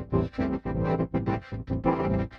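Output of the MVocoder plugin: synthesizer chords vocoded by a spoken male voice with only 10 bands, so the chords pulse on and off in the rhythm of the speech while the words can't be made out.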